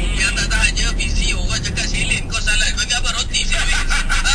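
Voices talking inside a car's cabin over the steady low hum of the car in slow traffic.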